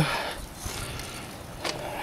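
Riding mower's hood being lifted open by hand: faint rubbing and handling noise, with a light click near the end.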